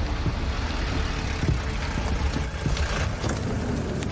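A van's engine and road noise as it drives, a steady low rumble with a few faint knocks.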